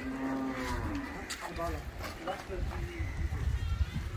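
A cow mooing once, a drawn-out call of about a second that holds and then slides down in pitch.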